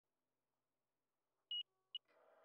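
Two short, high electronic beeps about half a second apart, the second cut off at the end, after near silence.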